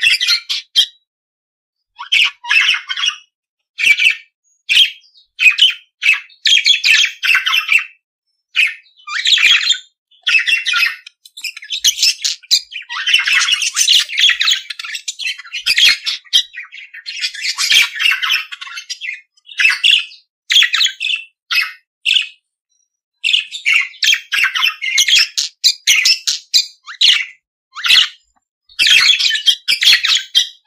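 Budgerigars chattering, with quick chirps, squawks and warbles in dense bursts, separated by short silent gaps.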